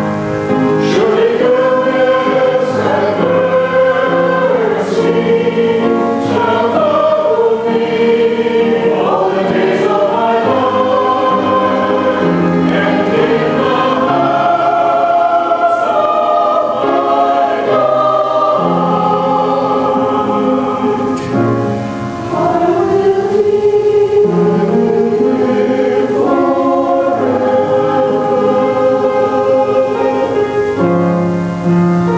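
Mixed church choir of men's and women's voices singing an anthem in parts, with sustained, flowing phrases.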